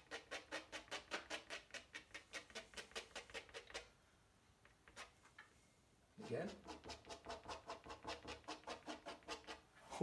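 Edge of a steel teardrop palette knife tapped and scraped quickly against watercolour paper, about six short strokes a second. The strokes pause for about two seconds midway, then resume.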